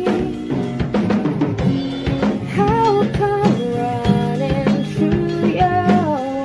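Pop ballad played by a band of acoustic guitar and drum kit, with a woman singing the melody over a steady drum beat.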